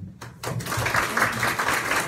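A small audience of about two dozen people applauding, with the clapping starting about half a second in after a brief click.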